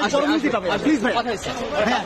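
Speech only: a man talking to reporters, with other voices chattering around him.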